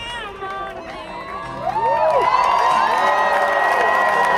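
A crowd of protesters cheering and shouting, with many voices whooping over one another; it swells markedly louder about two seconds in.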